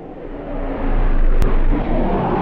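A deep rumbling sound effect swelling steadily in loudness, with a short sharp click about one and a half seconds in.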